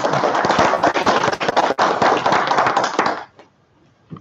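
Small audience applauding, a dense patter of many claps that dies away about three seconds in.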